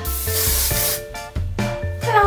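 Aerosol hairspray can sprayed onto hair in a single hiss lasting about a second.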